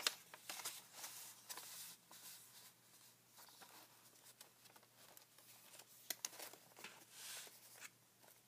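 Faint paper rustling and light clicks as the pages of a ring-bound paper journal are turned and handled, with a sharper click at the very start and a few more about six seconds in.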